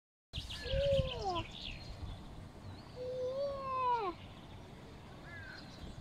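A cat meowing twice, each a long meow that rises and then falls in pitch. Faint short bird chirps come near the end.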